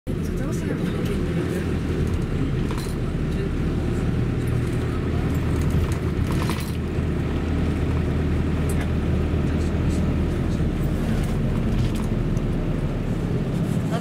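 Steady low rumble of a car's engine and tyres heard from inside the cabin while driving slowly, with a few brief faint clicks or rattles.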